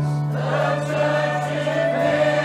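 Choir singing a worship song, with a held low note underneath. The voices swell in about half a second in and hold long notes.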